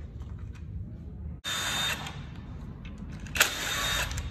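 Cordless impact wrench runs in two short bursts, each about half a second, with a steady whine: one about a second and a half in, and a louder one near the end that opens with a sharp knock. The bolts are being run out of a VW 0AM DSG transmission's clutch-side cover. Light metallic clicks of tool and bolts come in between.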